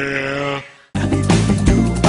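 A goat's single drawn-out scream that fades out just under a second in, after which upbeat theme music cuts back in.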